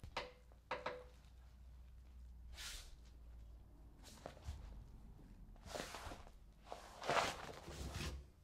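Faint rustling swishes of pasted wallpaper being slid and pressed by hand against a wall, about five soft brushes with a couple of light taps, over a low steady hum.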